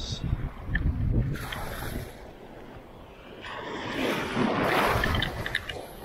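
Wind rumbling on the microphone and water sloshing, then a rising splashing hiss in the last couple of seconds as an 8-foot cast net lands spread open on the water.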